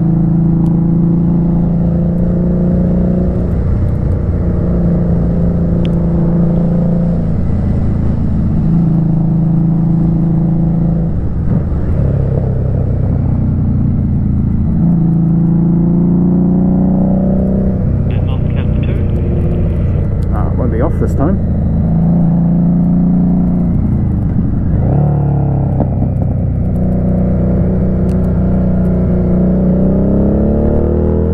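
Motorcycle engine running on the road, its note holding steady for a few seconds at a time and then dropping or climbing as the rider changes gear and rolls on and off the throttle, over a constant rush of wind and road noise.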